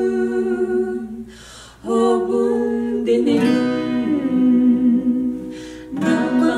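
Two women singing a Kuki-language song in sustained, held notes to acoustic guitar accompaniment. The singing breaks off briefly a little over a second in, then resumes with a new phrase, and the guitar comes through more strongly about halfway.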